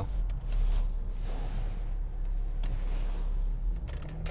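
Steady low road and engine rumble inside a moving car's cabin. A soft hiss swells for about two seconds in the middle.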